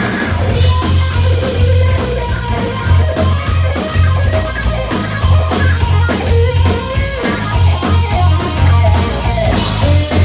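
Live rock band playing an instrumental passage: electric guitar playing a lead line with string bends over a steady cymbal beat, drums and bass.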